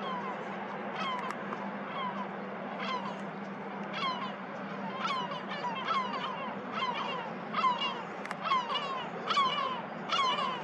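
Birds calling repeatedly, short falling calls that come more often and louder in the second half, with several in quick succession near the end. A low steady hum sits underneath.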